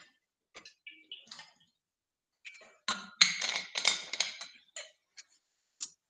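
Scattered short clicks and taps, with a denser run of clatter in the middle.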